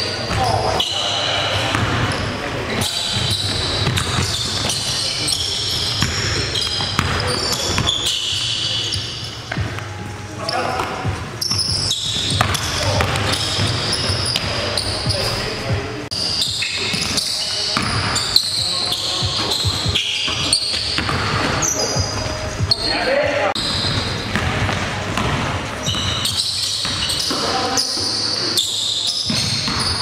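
Live basketball game sounds in a gym: indistinct players' voices calling out over a ball bouncing on the hardwood floor, echoing in the large hall.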